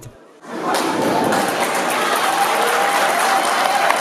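Audience applauding, starting about half a second in and continuing at a steady level.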